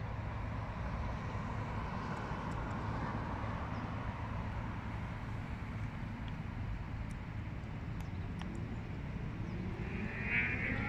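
Steady outdoor background rumble of distant road traffic, swelling a little for a couple of seconds in the middle, with a few faint clicks near the end.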